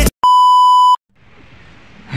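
A test-tone beep of the kind played over TV colour bars: one steady high beep lasting about three-quarters of a second, starting and stopping abruptly. After it, faint background noise.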